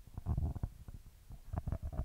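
Handling noise from a handheld microphone being lowered: a run of irregular low thumps and soft clicks.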